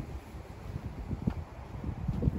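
Wind buffeting the microphone, an uneven low rumble, with a short knock about a second in.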